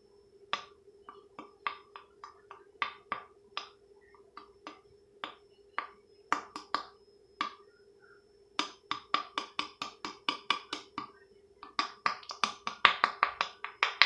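Spoon and spice container clicking and tapping as cinnamon is shaken onto the spoon: a few scattered taps at first, then quick runs of rattling taps over a faint steady hum.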